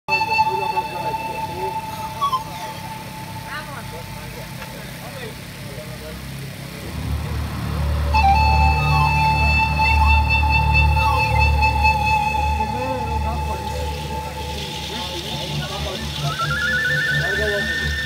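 Pan flute playing long, steady held notes over a backing track whose deep bass pulse comes in about seven seconds in. Near the end a higher, wavering flute line rises in.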